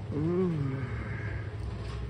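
A man's drawn-out Vietnamese "ừ" (an "uh-huh"), rising then falling in pitch within the first second, over a steady low hum.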